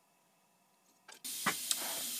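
Near silence, then about a second in a short click and an abrupt jump to a steady hiss of background noise, with two sharp clicks in it.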